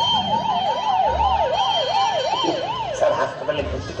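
A person imitating an ambulance siren with the voice, a 'dee-dee-dee' wail warbling up and down about three times a second. It breaks off about three seconds in.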